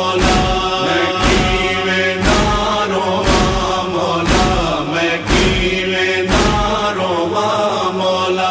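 Male chorus chanting a noha refrain in a slow, sustained lament, over a deep thump that falls about once a second.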